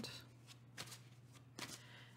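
Tarot cards being handled faintly: a soft rustle with a couple of light taps.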